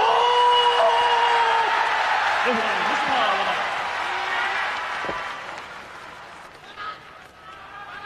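Arena crowd cheering and applauding as a ring announcer draws out a wrestler's name; the crowd noise is loudest over the first few seconds, then fades away over the second half.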